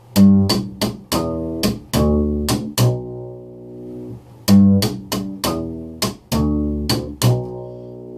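Upright bass played slap-style: a short ending lick of plucked notes with string snaps and percussive slaps against the fingerboard between them, played twice at speed. Each run lasts about three seconds and ends on a ringing low note, with a short pause between the two runs.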